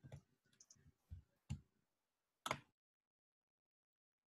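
Handling noise on the recording device: five or six short knocks and clicks as it is touched, the loudest about two and a half seconds in. The sound then cuts off abruptly to dead silence as the recording stops.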